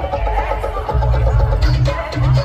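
Loud dance music played over a large outdoor sound system, with a heavy pulsing bass beat and a wavering melody line above it.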